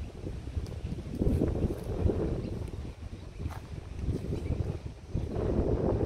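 Wind buffeting the microphone in gusts, swelling about a second in and again near the end.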